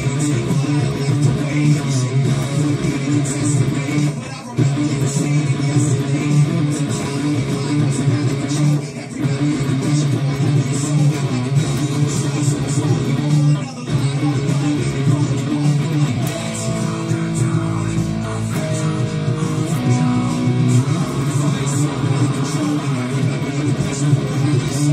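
Stratocaster-style electric guitar playing a heavy rock riff along with a full band recording, the music dropping out briefly about every four and a half seconds.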